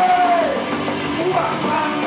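Punk band playing live: electric guitars and drums with a sung vocal line, a held note sliding down in pitch near the start and another rising after about a second.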